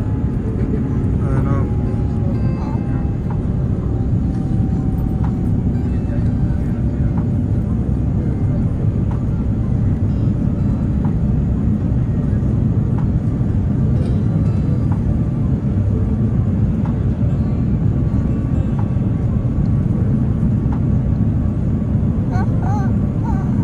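Steady low rumble of jet cabin noise inside an Airbus A350-900 beside its Rolls-Royce Trent XWB engine, with the aircraft descending on approach.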